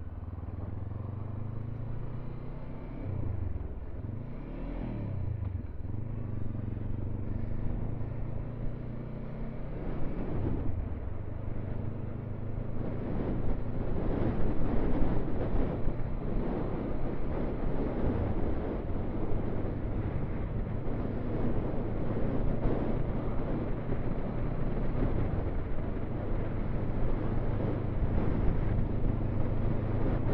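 Motorcycle engine pulling away and changing up through the gears, its pitch rising and dropping several times in the first few seconds. It then runs at steady road speed while wind and road noise grow louder from about halfway through.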